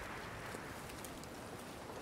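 Faint footsteps and rustling of people walking through dry undergrowth, a low steady crunch with no loud single sound.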